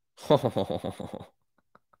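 A man laughing, a short run of pulses that starts loud and fades within about a second, followed by a few faint clicks.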